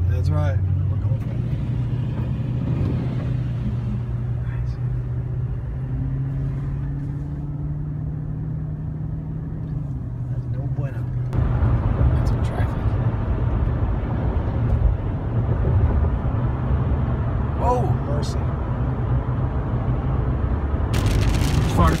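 Car engine and tyre noise heard from inside the cabin: a steady low engine hum over road rumble, which grows louder about halfway through as the car gets going on the highway. Near the end a loud hiss starts suddenly.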